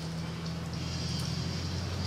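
Steady low machine hum with a faint high hiss coming in under a second in.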